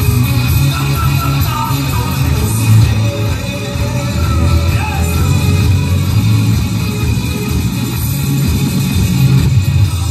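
Live rock band playing loudly through a club PA, with electric guitar, bass and drums, and heavy bass.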